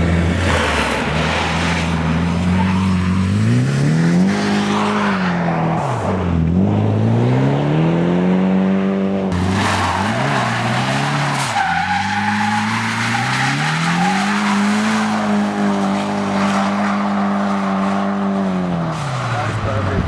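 Nissan S14 drifting: its engine revs climb and are held high under throttle, dropping briefly a few times before falling away near the end, over the squeal of its spinning rear tyres.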